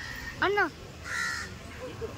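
A crow cawing once: a short, harsh call a little over a second in.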